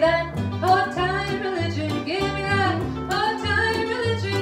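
A woman singing a slow melody, accompanied by a plucked acoustic guitar and an upright double bass.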